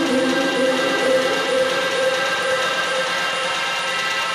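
House DJ set played loud over a club sound system, in a stretch of held synth chords with no clear beat.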